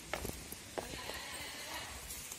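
Footsteps on rock: a few sharp knocks in the first second, over a steady faint hiss.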